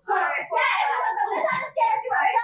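A woman's raised voice shouting indistinctly, with other voices mixed in and a couple of short knocks near the end.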